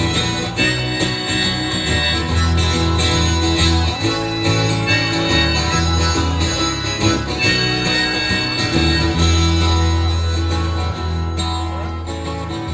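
Instrumental break in an acoustic band's song: acoustic guitars strumming over low bass notes, with a harmonica played into the vocal microphone carrying the melody.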